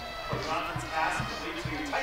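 Music with a regular drumbeat, mixed with voices in the background.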